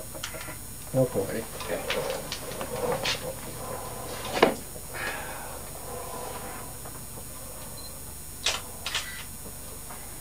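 Low, unclear talk, then sharp clicks and knocks of breathing gear being handled: the loudest knock comes about four and a half seconds in, and two quick clicks come near the end.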